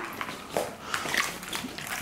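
Plastic ball-pit balls knocking together and water splashing in an inflatable pool as a garden hose is moved among them: a string of short, irregular clicks and rustles.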